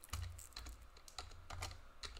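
Stiff trading cards being flipped through and sorted by hand, making a run of irregular clicks with light handling thumps.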